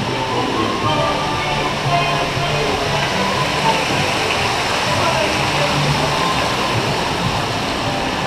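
Steady rushing of water along a log-flume channel and from a small waterfall, with music playing over it.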